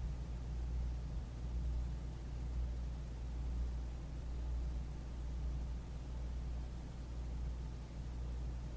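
A steady low hum with a faint hiss over it: the background noise of the recording, with no other sound.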